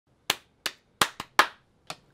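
Hand claps: five sharp claps in an uneven rhythm, with a lighter click near the end.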